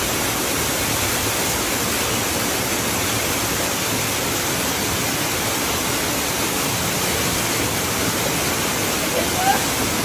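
Waterfall cascading over rocks: a steady, unbroken rush of water.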